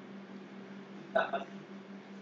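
A brief two-part vocal sound from a person about a second in, over a steady low hum.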